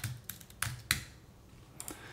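Computer keyboard typing: a few quick keystrokes in the first second, then a pause and a couple of faint clicks near the end.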